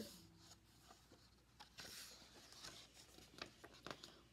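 Faint paper rustling and a few soft handling clicks as a page of a hardcover picture book is turned.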